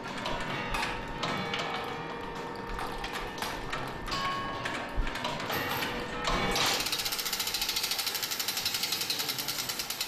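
Spasskaya Tower clock's gear mechanism running, with clicks and ticks from its wheels and pawls under background music; about two-thirds of the way through, a fast, even ratcheting clatter sets in and continues.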